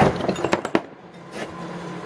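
A few light, sharp clicks and knocks in the first second, then a quieter stretch.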